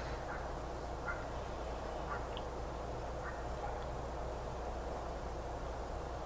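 Steady background noise with a low electrical hum and an even hiss. A few faint, short sounds stand out between about one and three seconds in.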